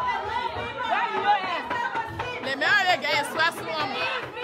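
A celebrating crowd in a hall: many excited voices talking and shouting over one another, with a loud, wavering high-pitched cry about two and a half seconds in.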